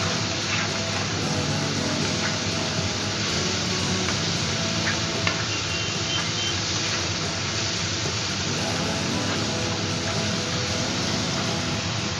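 Spice paste with tomato sizzling in hot oil in a non-stick wok as a spatula stirs it, the masala being fried down, with a few light spatula clicks against the pan. Background music plays underneath.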